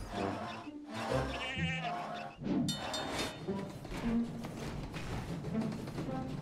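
Cartoon background music with a goat bleating, a wavering call about a second and a half in.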